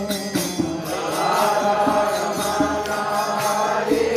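Devotional kirtan: voices chanting a mantra together over a steady beat of hand percussion. Fuller group singing comes in about a second in.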